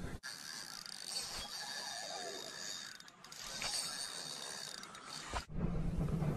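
Fishing reel being cranked steadily to bring in a hooked bass, its gears whirring, with a short break about three seconds in. Near the end the sound changes abruptly to a low hum.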